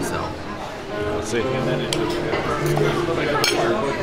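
Knife and fork clinking against a ceramic plate while cutting meat, a few sharp clinks over steady background music.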